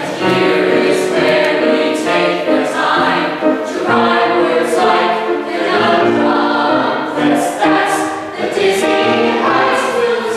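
A mixed ensemble of men's and women's voices singing a song together, the notes changing quickly in short sung phrases.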